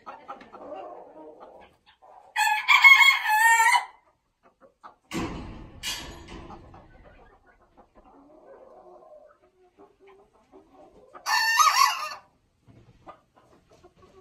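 Bantam roosters crowing twice: one crow of about a second and a half a couple of seconds in, and a shorter one near the end, with a brief thump between them. The two roosters are rivals squaring off.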